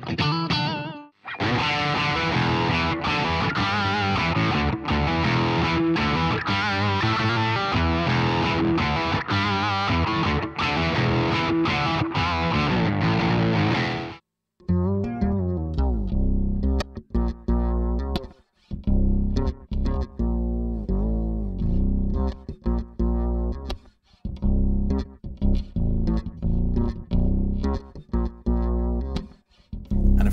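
Electric guitar played through a Behringer Octave Divider pedal, giving a dense, sustained tone with a sub-octave beneath it, until about fourteen seconds in. After a brief break, a fretless electric bass plays through the same pedal: very deep notes with short gaps between them.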